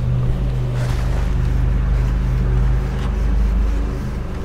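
Steady low hum with an even rushing noise over it.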